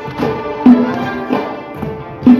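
Live Uyghur muqam ensemble music: string instruments play a melody over a frame drum (dap) striking accented beats about every two-thirds of a second.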